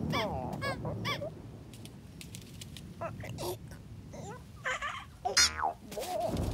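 Cartoon ostrich squawking: three quick honking calls at the start, then a loud squawk that falls steeply in pitch near the end.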